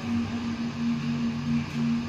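Steady low droning hum with a regular pulsing tone, as of an ambient drone filling a dark exhibition room.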